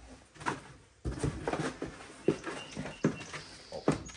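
Paper and packaging being handled: irregular rustling with sharp little clicks, sparse at first and busier from about a second in.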